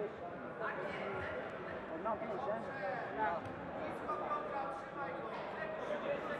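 Background voices of many people in a sports hall, overlapping talk and calls with no one speaker standing out.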